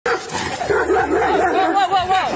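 German Shepherd barking and crying out, over people's raised voices.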